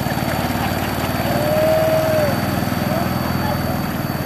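Small longtail-boat engine, a small petrol engine driving a long propeller shaft, running steadily under way with a rapid, even firing pulse.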